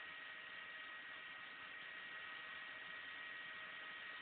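Faint steady hiss with a thin high whine from a radio scanner on 145.800 MHz FM, with no transmission coming through.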